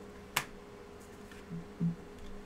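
A single sharp click as trading cards are handled, then two short closed-mouth 'mm-hmm' hums near the end.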